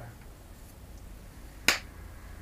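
A single sharp slap of two palms meeting in a high five, near the end.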